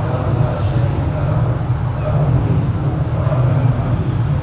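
Steady low-pitched background rumble, even and unbroken, with only faint traces above it.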